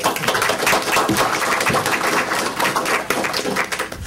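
Audience applause: many hands clapping in a dense, steady patter, fading out near the end.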